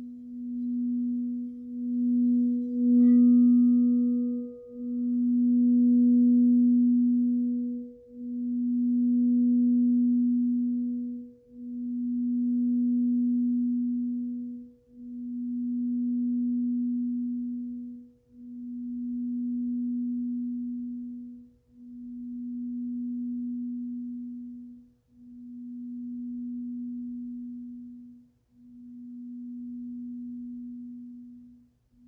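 Crystal singing bowl tuned to B, played with a mallet at the rim, a light knock about three seconds in, then ringing on its own. One low, pure tone that pulses in slow swells about every three and a half seconds and slowly fades.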